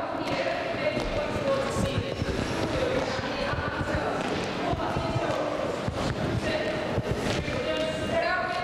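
Many children's feet thudding irregularly on a sports hall floor as they march with high knees, in a large echoing hall.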